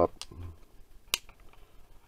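A sharp click about a second in, with a fainter click just before it: the GoPro Hero 3 underwater housing's latch snapping shut.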